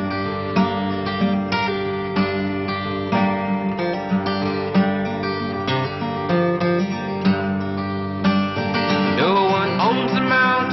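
Instrumental passage of a folk song on acoustic guitar, notes plucked and strummed at an even pace. A sliding tone comes in near the end.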